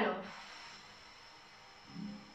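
A woman breathing out audibly in one long exhalation, which fades over about a second and a half. It is the exhale phase of a Pilates breath, taken as she closes her arms.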